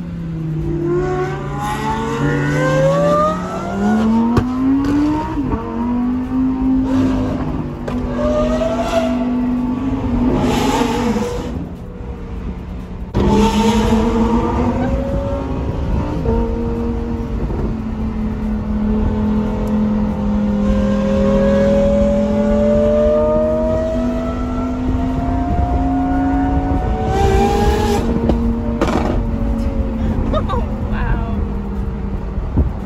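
Lamborghini supercar engine heard from inside the cabin, pulling up through the revs for the first few seconds before a quick gear change drops the pitch. It then holds a steady, slowly rising note at highway speed, with a short easing-off near the middle and a sharp surge back about halfway through.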